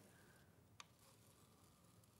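Near silence: faint room tone, with a single faint click a little under a second in.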